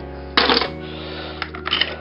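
Background music with steady held notes. Over it, small die-cast metal toy cars clack against one another as one is set down among the others: one sharp clack about half a second in, then a few lighter clicks.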